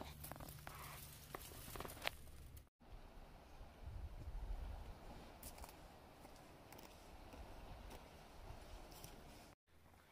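Faint outdoor background: a few light clicks and scuffs in the first few seconds, then a low rumble of wind on the microphone swelling briefly a few seconds in.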